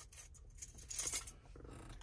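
Faint handling noise, with one short rustle about a second in.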